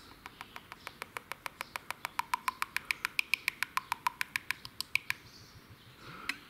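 Engine oil glugging out of a metal Honda Ultra G2 can into a funnel: a fast, regular run of short gurgles, about nine a second, as air bubbles back into the can. It stops about five seconds in.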